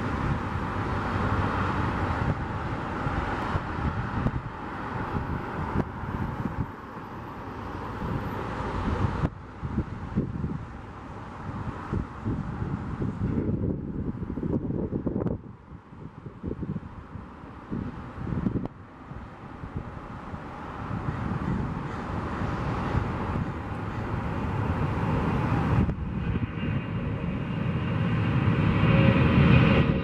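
Boeing 757-200 jet engines at takeoff power, the twin-jet's noise growing steadily louder over the last ten seconds as the plane rolls down the runway toward the listener. A rising whine joins near the end.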